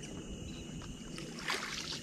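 A small boat being pushed along with a long pole, water swishing around the pole and hull. There is a single knock about one and a half seconds in.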